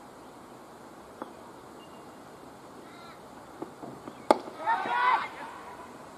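A cricket bat strikes the ball with a single sharp crack about four seconds in. Players' voices follow at once, shouting calls as the batters set off for a run.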